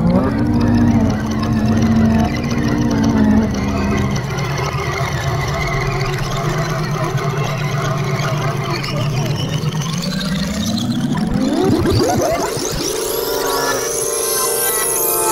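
An audio sample played back through the Manipuller Dream-Catcher sampler, its speed and pitch bent by pulling and releasing the strings. Its pitch swoops up at the start, holds, settles into a low steady drone, then sweeps up steeply near the end.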